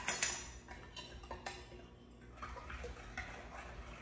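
A spoon stirring a liquid mixture in a glass mixing bowl, clinking against the glass. The clinks are loudest in the first second or so, then fade to faint scraping and ticks.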